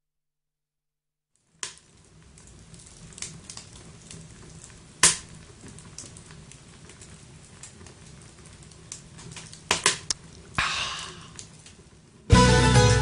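Silence for about a second and a half, then quiet ambient sound of a pot of stew being stirred, with scattered clicks and knocks. One sharp knock comes about five seconds in and a quick cluster near ten seconds, followed by a brief rush of noise.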